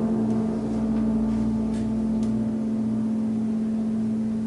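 Clarinet, piano and double bass trio holding a long chord that was struck just before, one low note sustained steadily with its overtones ringing.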